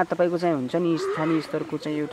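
Speech only: a woman talking in Nepali, close to the microphone.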